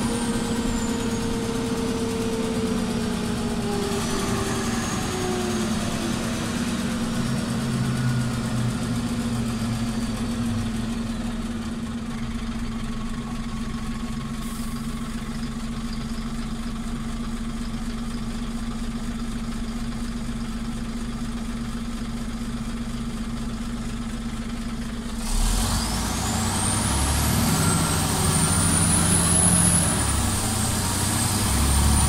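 Scania OmniCity articulated city bus heard from inside: the drivetrain whine falls away as the bus slows, then the engine idles steadily for about thirteen seconds. A little over three-quarters of the way through, the engine picks up suddenly and a rising whine follows as the bus pulls away.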